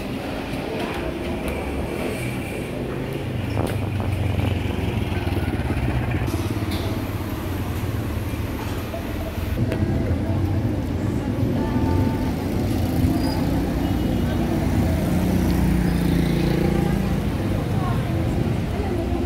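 City street ambience: a steady rumble of road traffic with cars and motorcycles passing, and indistinct voices of people nearby. The rumble grows louder a few seconds in.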